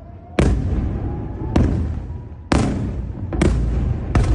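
Four loud, sharp explosions about a second apart during a ballistic missile attack, each ending in a rumbling tail; the first comes about half a second in.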